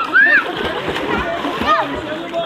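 Water splashing in a swimming pool under a din of overlapping voices, with a loud shout just after the start and another near the end.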